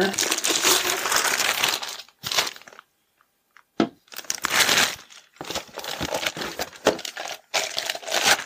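Clear plastic packaging bag crinkling and rustling as leaf-blower tube sections are unwrapped, in bursts with a short pause about three seconds in.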